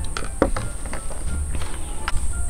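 A few small clicks and taps over a steady low hum and a thin, steady high-pitched hiss.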